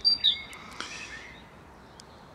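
A small songbird singing a rapidly repeated two-note phrase, a high note then a lower one, which stops about half a second in. A fainter call follows about a second in.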